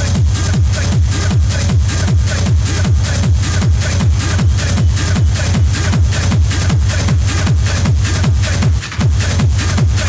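Hard techno (schranz) mixed by a DJ, driven by a fast, steady, pounding kick drum under a dense layer of high percussion. There is a brief drop in level just before the end.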